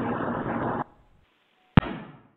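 Telephone-line hiss with a faint steady hum that cuts off abruptly just under a second in, then a single sharp click near the end.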